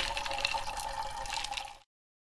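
Banana juice pouring from a can into a glass packed with ice, a steady splashing fill that cuts off shortly before the end.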